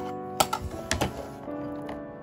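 Kitchen knife cutting through a chocolate-glazed old-fashioned doughnut with chocolate-crunch topping on a plastic cutting board: a few sharp crunches and clicks in the first second as the blade goes through to the board, over background music.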